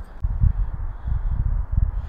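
Wind buffeting the microphone: an uneven low rumble that comes in gusts, with almost no high-pitched content.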